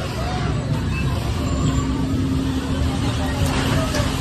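Bumper car running on the ride floor: a dense low rumble, with a steady hum setting in about a second and a half in and voices in the background.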